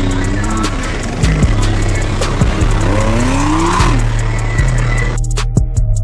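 Background music with a heavy bass beat, mixed over live street sound of vehicle engines revving up and down, twice. About five seconds in, the street sound cuts out and only the music remains.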